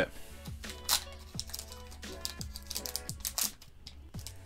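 Foil booster-pack wrapper being torn open and handled, giving a few sharp crinkling rustles, the loudest about a second in, as the cards are slid out. Quiet background music runs underneath.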